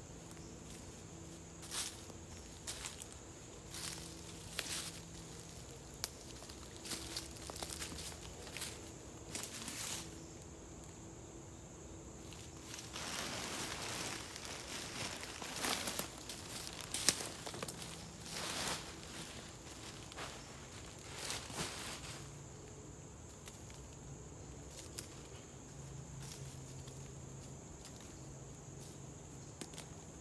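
Hatchet chopping into a dead fallen log, about a dozen sharp strikes over the first ten seconds. Then footsteps through dry leaves and the rustle and crinkle of black plastic trash bags stuffed with leaves being carried and set down. Under it all runs a steady high insect drone.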